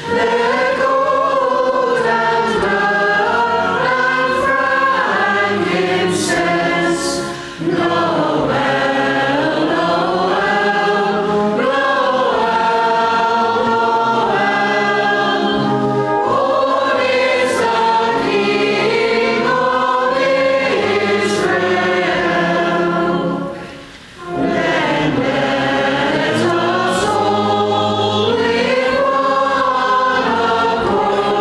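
Choir and congregation singing a carol together. The singing drops away briefly twice between lines, about a quarter of the way in and again past two-thirds through.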